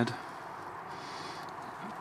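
Low steady background hiss with a faint, soft rustle about a second in, from the dry, papery Ensete banana stem being handled.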